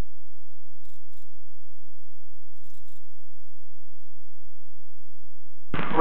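Low, steady rumble of a light aircraft's engine, heard faintly through the cockpit intercom audio with nothing in the upper range.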